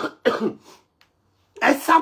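A man coughing into his fist: a quick run of coughs at the start, then another run near the end.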